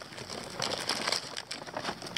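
Paper gift bag and plastic candy wrapper crinkling and rustling as a hand rummages in the bag: a rapid, irregular run of small crackles.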